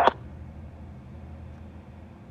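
Faint steady low hum and hiss of an air traffic control radio feed between transmissions, with the end of a radio voice cutting off right at the start.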